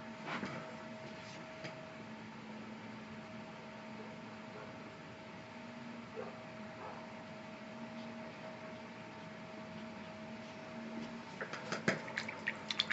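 Quiet room tone with a faint, steady electrical hum and a few soft ticks, then a short run of light clicks near the end.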